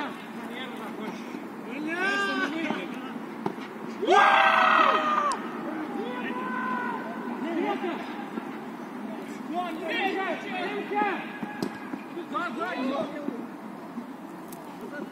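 Footballers calling and shouting to one another across an open pitch during play: scattered short calls, with the loudest a long high shout about four seconds in.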